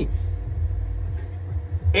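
A steady low rumble with no speech over it. It drops away near the end.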